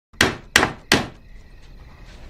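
Claw hammer driving a nail into a wall: three quick, sharp blows about a third of a second apart, with a faint ring lingering after the last.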